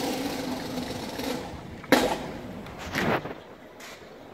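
Open-air arena ambience as a public-address announcement echoes away. About two seconds in comes a single sharp crack, and about a second later a short, louder sound.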